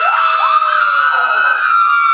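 Women screaming with excitement: one long high-pitched scream held at a steady pitch, with a second, lower voice sliding down in pitch beneath it.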